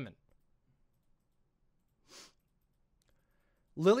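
Near silence: room tone, broken by one short, soft hiss-like sound about two seconds in.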